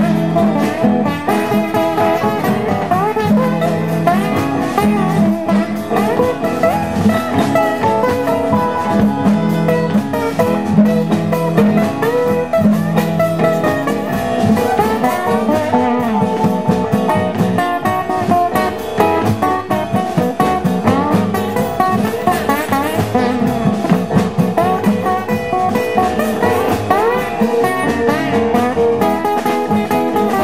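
Live blues band playing an instrumental passage, led by an acoustic guitar picking and bending notes over a walking upright bass.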